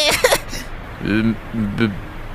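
Speech: a voice in short utterances, with no applause to be heard.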